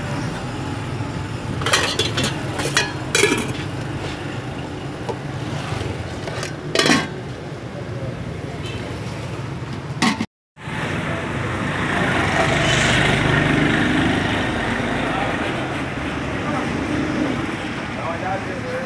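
Street food stall ambience: indistinct background voices with a few sharp clinks of plates or utensils in the first half. After a sudden cut about ten seconds in comes steadier street noise with voices and passing traffic.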